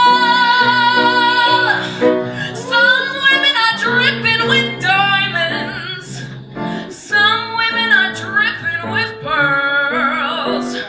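A woman singing a show tune with live piano accompaniment. She holds one long note with vibrato for about the first two seconds, then sings shorter phrases over the piano chords.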